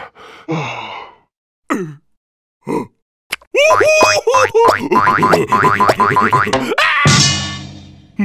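Cartoon character voice and comic sound effects over music: a few short yelps that fall in pitch, then about three seconds of gleeful vocalising and laughter with quick comic music and boing-like effects, fading away near the end.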